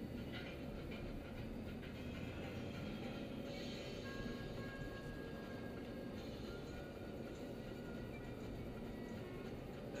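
Steady road and engine noise inside a moving car's cabin, with faint music underneath.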